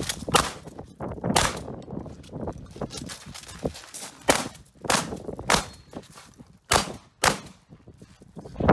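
Shotgun fired in a string of about eight shots at uneven spacing, some half a second apart and others more than a second apart.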